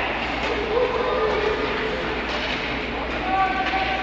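Ice rink ambience during live hockey play: a steady wash of skates on the ice and arena noise, with indistinct shouts from players and spectators. A held shout starts a little past three seconds in.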